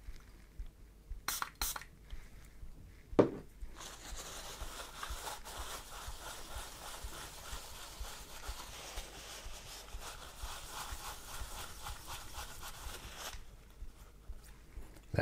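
A cloth rubbing steadily over the copper cold plate of an AIO liquid-cooler pump head, wiping off residue, for about nine seconds. Before the rubbing, two light clicks and then one sharp knock about three seconds in.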